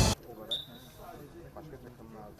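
Loud music cuts off just after the start. Then comes faint outdoor ambience with distant voices of people on a training pitch, and a short click with a brief high tone about half a second in.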